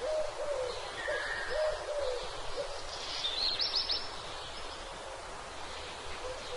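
A bird calling in a series of short, low hoots, about two a second, that stop about two and a half seconds in. A brief high chirping trill from another bird follows a second later.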